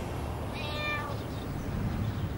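A cat meows once, a short call about half a second in, over a low steady rumble.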